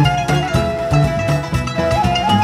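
Live Turkish Sufi (tasavvuf) music ensemble playing an instrumental passage: a held melody line that slides between notes, over plucked strings and a steady hand-drum beat.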